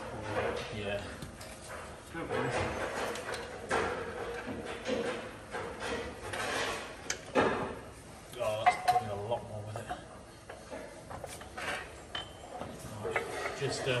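Irregular metal clinks and knocks from hand tools working on a Chieftain tank gearbox's steel casing as its bolts are undone with a long socket bar. There are a few sharper knocks between about seven and nine seconds in, with low voices underneath.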